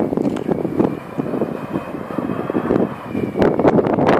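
Avro Vulcan XH558's four Rolls-Royce Olympus jet engines running as the bomber flies in low, a rumble with a faint high whistle that rises slightly and then fades. Gusts of wind buffet the microphone, loudest near the end.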